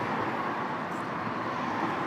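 Road traffic on the adjacent street: a steady hiss and rumble of passing vehicles.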